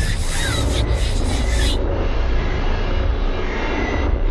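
Loud, dense low rumbling noise with a faint steady high tone over it. A hissing wash of noise sits on top for the first two seconds or so and then cuts off.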